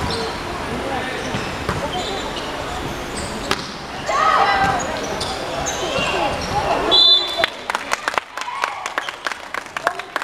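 Indoor volleyball rally with players shouting and calling. About seven seconds in comes a short, shrill referee's whistle ending the rally, followed by a quick run of sharp claps and smacks.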